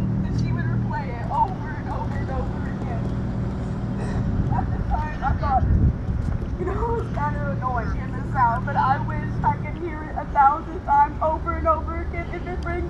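Steady low motor hum under voices talking at a distance; about nine and a half seconds in, the hum shifts to a lower pitch.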